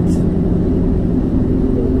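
Road and engine noise inside a moving car's cabin: a steady low rumble, with a faint hum that fades about one and a half seconds in.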